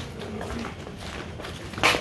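Outdoor background noise with faint scattered steps. One sharp, short noisy crack near the end is the loudest sound.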